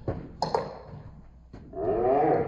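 Table tennis ball clicking sharply twice in quick succession off bat and table, then a player's loud drawn-out shout rising in the last half second.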